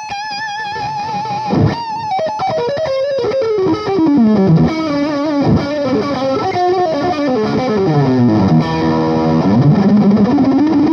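Ibanez S621QM electric guitar (mahogany body, quilted maple top, Quantum pickups) played amplified. It opens on a held high note with vibrato, then moves into fast lead runs up and down the neck with slides, and ends with rapid repeated notes.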